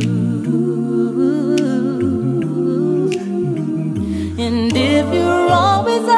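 Song passage of voices in close harmony humming a wordless line, with a low bass voice underneath and gliding, vibrato-laden upper parts.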